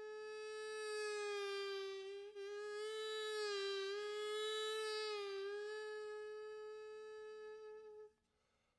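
Hichiriki, the Japanese double-reed pipe, holding one long reedy note that dips slightly in pitch a few times, swells louder in the middle and eases off, then stops just at the end.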